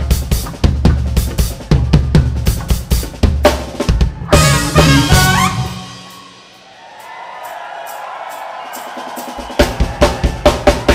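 Live funk band with a driving drum groove of kick, snare and rimshots. The band drops out about six seconds in, leaving a quieter stretch with light high ticks, and the drums crash back in just before the end.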